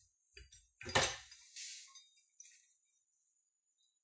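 Metal clinks and one sharp clank about a second in, followed by a short scrape, as the flywheel is worked off an ATV engine's shaft.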